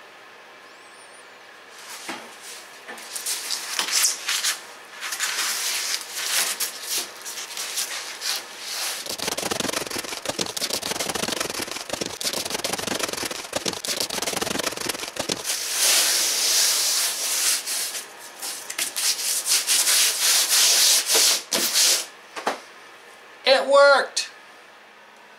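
Hands rubbing and pressing a sheet of foil-faced insulation into place against the trailer's wooden framing, an irregular run of scuffing, crinkling strokes that starts about two seconds in and stops shortly before the end.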